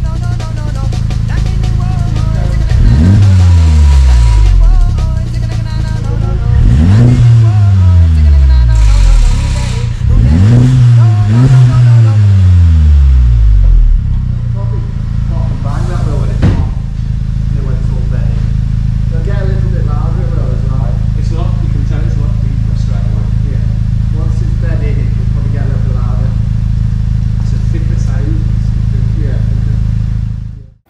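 VW Mk7.5 Golf GTI's turbocharged 2.0-litre four-cylinder engine, breathing through a newly fitted Milltek resonated cat-back exhaust, revved several times with each rev falling back. It then settles to a steady idle about halfway through, with a single sharp crack shortly after.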